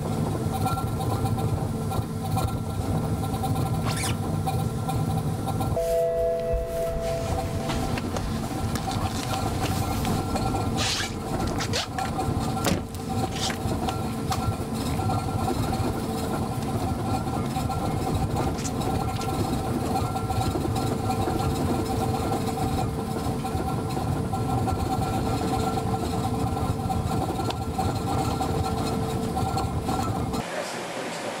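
Steady mechanical hum and rumble of a vehicle test rig under the car's wheels, with several steady tones over it. The sound shifts briefly about six seconds in, and a few short clicks come a little before halfway.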